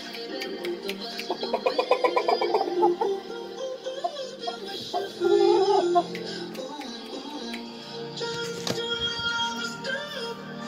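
Music with a singing voice playing throughout.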